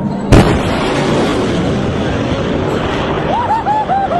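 Sonic boom from a jet making a low supersonic pass over the sea: one sharp, loud crack about a third of a second in, followed by the jet's steady engine noise. Near the end, spectators whoop.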